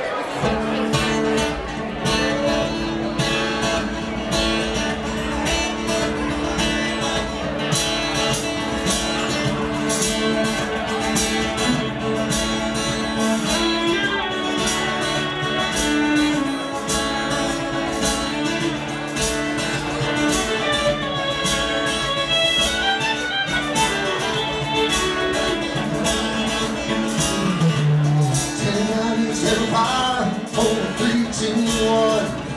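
Live rock band playing a song through the club PA: acoustic and electric guitars over a steady drum beat.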